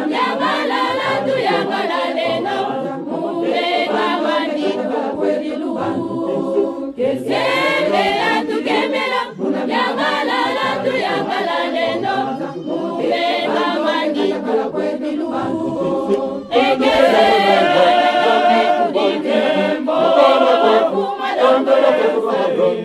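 Church choir of mostly women's voices singing unaccompanied, in long phrases broken by short breaks. It grows louder about sixteen seconds in.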